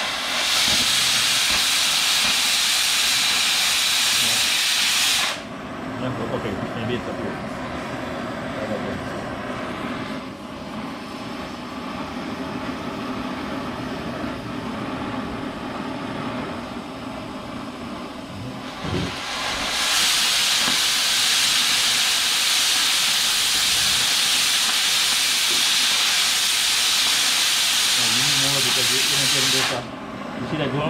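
Oxy-fuel cutting torch cutting steel. A loud, steady hiss of the cutting-oxygen jet runs for about five seconds, then drops to the quieter, steady noise of the preheat flame alone for about fourteen seconds. The loud jet hiss comes back about twenty seconds in and stops abruptly just before the end.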